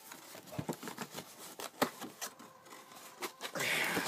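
Cardboard box being picked up and moved aside by hand: a scatter of light taps and scrapes, with a brief rustle of paper near the end.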